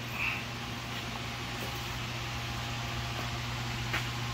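Steady low hum with an even hiss, a constant background machine drone and no distinct events.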